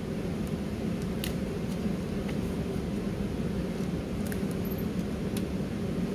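Steady hum of room ventilation, with a few faint clicks and rustles of tape and paper being handled at the tape dispenser.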